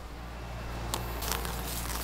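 Faint rustling and a few light clicks about a second in, as of clothing being handled, over a steady low hum.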